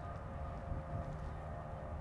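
Quiet outdoor background: a faint, steady low rumble with a thin, steady hum over it.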